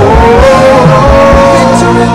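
Live worship music: voices singing a long, gliding 'oh' over a band with a steady kick-drum beat.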